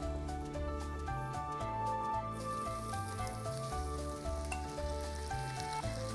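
Tilapia fillets sizzling on the hot plate of a preheated T-fal OptiGrill electric contact grill, a steady hiss setting in a couple of seconds in as the fish goes onto the plate. Background music with a steady bass line plays throughout.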